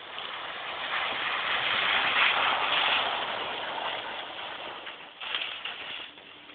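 A car on an ice track: a rushing noise of tyres and thrown snow and ice that swells over the first two seconds or so and then fades, followed by a few short knocks about five seconds in.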